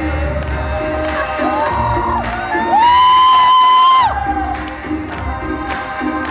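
Live band music with audience cheering and whooping. About three seconds in, a high voice glides up and holds a loud note for just over a second.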